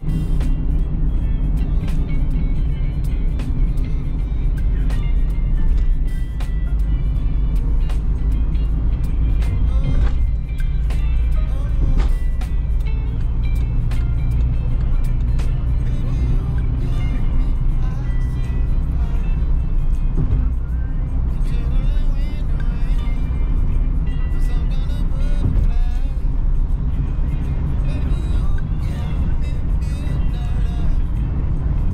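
Steady low engine and road rumble inside a moving car's cabin, with music and a voice over it.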